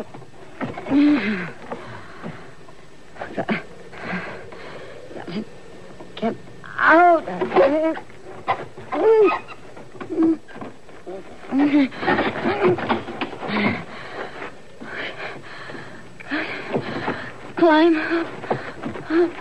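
Voices without clear words: short pitched cries or laughs that rise and fall, coming in several bursts, the strongest about seven seconds in and again near the end.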